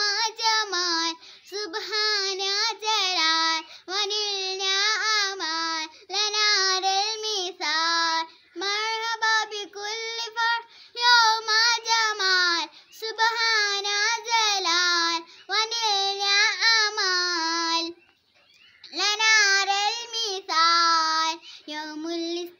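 A young girl singing an Arabic song solo, with no accompaniment, in phrases separated by short breaths and a longer pause about eighteen seconds in.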